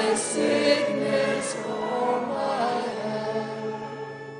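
Congregation singing a hymn together: many voices in slow, sustained phrases, with a phrase fading out near the end.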